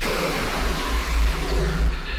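Sudden loud burst of rushing, hiss-like noise with a deep rumble underneath, from a horror-video jump scare. It starts abruptly and cuts off about two seconds later.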